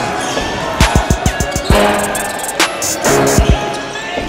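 Background music with a heavy, deep bass beat: a quick run of thumps about a second in and another after three seconds, over rapid high ticks.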